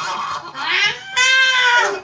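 A loud, drawn-out, meow-like cry: it rises from about half a second in, holds high and steady for most of a second, then drops in pitch at the end.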